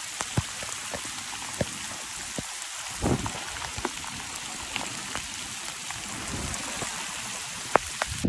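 Heavy rain from a passing storm pouring onto a lake surface: a steady hiss, dotted with many sharp taps of drops striking close by.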